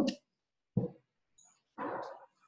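Two short bumps and rustles about a second apart, as one person gets up from a chair in front of the microphone and another moves in to sit.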